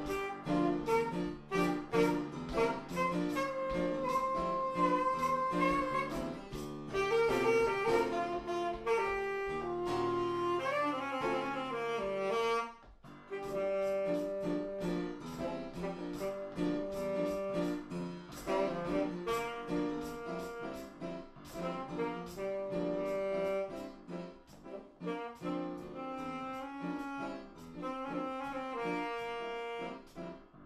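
Saxophone improvising a blues line, held and moving notes over accompaniment with a steady beat. The melody breaks off briefly about thirteen seconds in, then picks up again.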